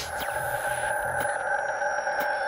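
Synthesized logo-sting sound effect: a steady electronic tone chord held in the middle register, with faint clicks about once a second and thin high whistling glides.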